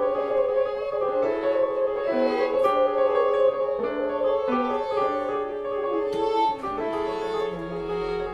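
French horn, violin and piano playing together in a live chamber-jazz trio, one long note held over shorter moving notes.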